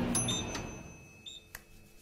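A microwave oven's bell dings as it finishes heating, a bright ring that fades away over the tail end of background music, then a sharp click about a second and a half in as the microwave door is opened.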